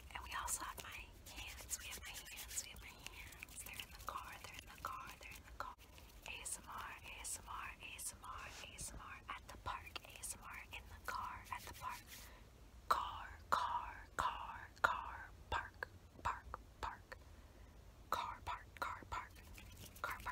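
A woman whispering close to the microphone, with short clicks scattered through it, louder bursts about two thirds of the way in.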